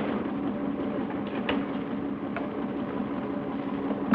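Small electric motor of a workshop bench machine running steadily, with a few light clicks of work at it.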